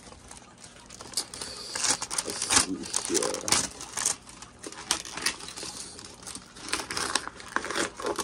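Paper mailing envelope being roughly torn open and crinkled by hand: a run of irregular rips and crackles, busiest a couple of seconds in.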